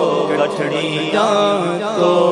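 A man's voice chanting an Urdu naat unaccompanied, holding and bending long notes in a slow, ornamented melody.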